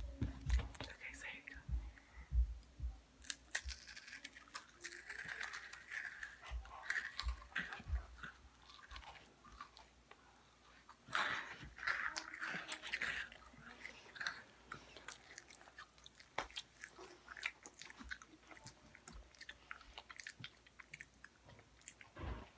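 Close-up crunching and chewing of small animal-shaped cookies, with many short crisp crackles, under faint whispering.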